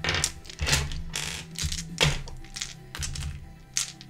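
Twelve-sided dice clattering in the hands and across a tabletop as they are gathered and tossed: a quick, uneven run of clicks and knocks, over soft background music.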